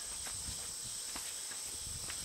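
Steady high-pitched insect chirring in an open field, with a few faint footfalls on grass and a low rumble of wind.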